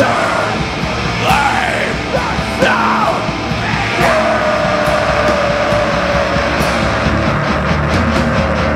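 A heavy metal band plays live and loud, with distorted guitars, drums and cymbal crashes, while the vocalist yells into the microphone. About four seconds in, a single long held note sets in and slides slowly downward.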